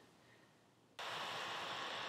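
Dead silence for about a second, then a steady faint hiss: the background noise of the narration's microphone recording, with no other sound.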